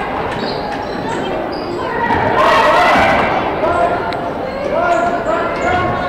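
Gymnasium sounds during a girls' basketball game: a basketball bouncing on the hardwood, short high sneaker squeaks, and spectators' voices from the bleachers that grow louder about two seconds in.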